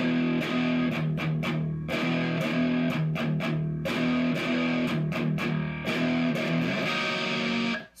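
Gibson Les Paul electric guitar, tuned down a half step and played through an amp. It plays a riff of repeated two-string power chords, E5 with grace-note hammer-ons up to F5, with short breaks between the phrases.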